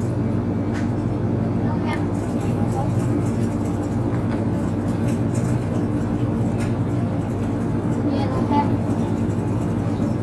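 Steady low hum of a supermarket's open refrigerated display cases and ventilation, made of several constant tones with a few faint clicks.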